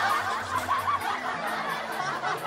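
Many people laughing and chuckling together, overlapping voices at a fairly even level.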